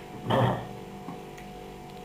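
A man drinking from a plastic cup, with one short swallowing sound about half a second in, followed by a low steady hum.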